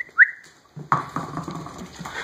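Two short rising chirps at the start, then a puppy's claws scrabbling and skittering across a hardwood floor as it runs after a thrown toy.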